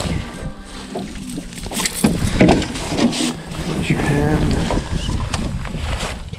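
Knocks and clicks of a freshly landed walleye being handled in a landing net on the boat floor, with short stretches of indistinct voices.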